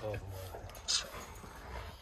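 A small puppy gives one brief, high yap, a little under a second in.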